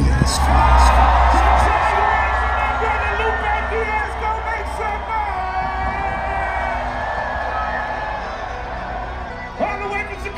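Live band music played loud over a festival sound system, heard from within the crowd, with voices whooping and singing along. The heavy bass drops back about two seconds in and the sound eases slightly toward the end.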